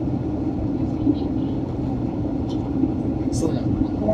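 Steady cabin drone inside a Boeing 767 airliner during its descent: engine and airflow noise with a constant low hum.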